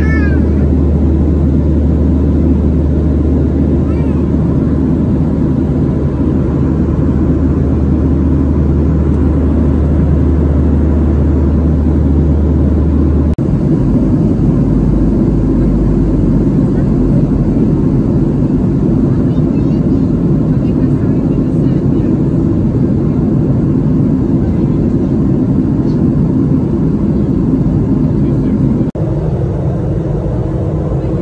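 Steady cabin noise of a Boeing 737-700 airliner in flight, heard at a window seat over the wing: a loud, even rush of airflow over the CFM56 engine drone. The deep low hum shifts about 13 seconds in and again near the end.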